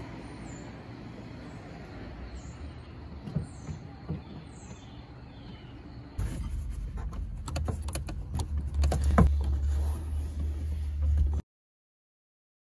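Plastic rear seat header trim panel of a 2000 Ford Mustang being guided in behind the back seat and pressed onto its clips: a few soft knocks at first over faint high chirps, then from about halfway a low rumble under a run of sharp clicks and taps. The sound cuts off abruptly shortly before the end.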